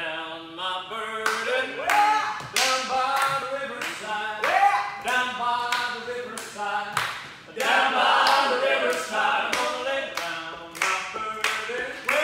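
Live rock-and-roll band playing: electric and acoustic guitars, upright bass and drums, with several voices singing together over a sharp, steady beat of about two hits a second.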